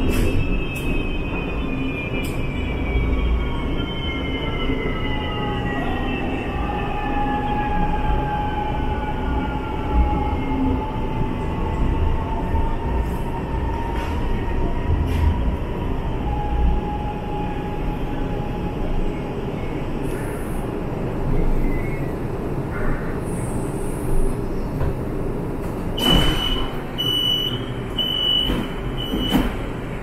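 CSR Zhuzhou light rail train slowing to a stop: the traction motors' whine falls in pitch over the first dozen seconds over a steady rumble of wheels and car body. Near the end comes a run of short, evenly spaced high beeps as the doors open.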